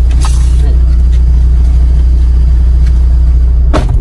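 Steady low rumble of an idling car, heard from inside the cabin, with one sharp knock near the end.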